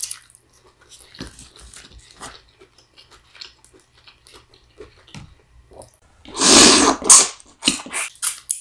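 Close-miked eating sounds: soft wet chewing and lip smacks as buttery lobster tail meat is eaten by hand. Near the end comes a loud, noisy burst lasting about a second, then a few shorter ones.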